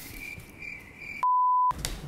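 A single steady 1 kHz bleep lasting about half a second, a little over a second in, with the rest of the sound cut out around it: an edited-in censor bleep.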